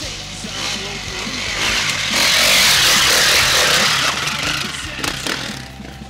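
Enduro dirt bike engine revving as it climbs the trail and rides past close by, rising to its loudest about two seconds in and fading near the end, over background rock music.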